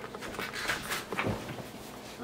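Rustling and a few soft knocks from a hand-held camera being handled close against a sweater.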